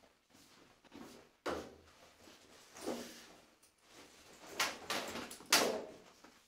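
A door being opened and shut, with a few scattered knocks and scrapes of movement in a small tiled room.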